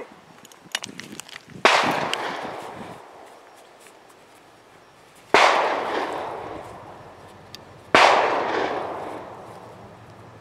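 Three gunshots a few seconds apart, each a sharp crack followed by a long fading echo, not fired from the target position. A few small handling clicks come near the start.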